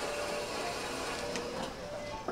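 Electric shaved-ice machine running, shaving ice into a cup: a steady, even noise.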